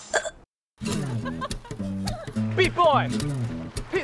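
Bouncy edited-in background music with a steady, repeating bass line. Over it come short, falling voice-like sounds, a few times in the second half. A brief dead-silent gap sits at an edit near the start.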